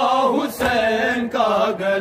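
A group of men chanting a noha, an Urdu Shia mourning lament, together in unison without instruments, in short sung phrases.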